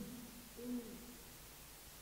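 A quiet room with one faint, short, low hum about half a second in, like a man's voice saying "mm" between phrases.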